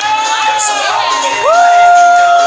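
Spectators cheering over Latin-style dance music. About halfway through, one voice swoops up into a long, high, held whoop.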